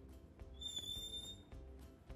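Light background music with plucked-string notes. A single high, steady whistle-like tone sounds for about a second, starting about half a second in.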